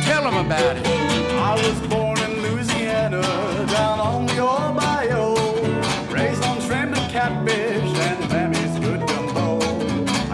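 A western swing band plays an instrumental intro on fiddle and archtop guitar. The guitar keeps a steady chopped rhythm, and the fiddle takes the lead with sliding notes in the first part.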